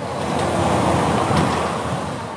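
A road vehicle passing close by: a steady engine-and-tyre noise that swells and then fades over about two seconds.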